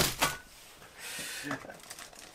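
A short rustle of packaging being handled, about a second in and lasting about half a second.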